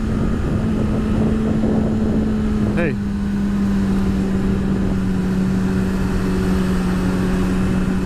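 Kawasaki ZX-6R inline-four engine running at a steady cruise, its pitch holding level and then dropping slightly about three seconds in as the throttle eases, over a steady rush of wind noise on the helmet camera.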